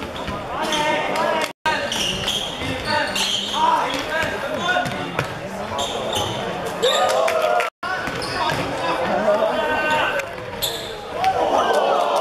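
Basketball game on a wooden indoor court: the ball bouncing amid players' calls. The sound cuts out suddenly twice.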